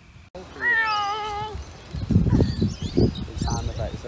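A high-pitched, wavering meow-like call lasting about a second, followed from about halfway in by irregular low rumbling noise.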